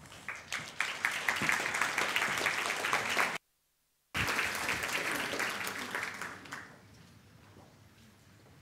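A large audience applauding, the clapping dying away about two-thirds of the way through. The applause is broken near the middle by a brief gap of dead silence.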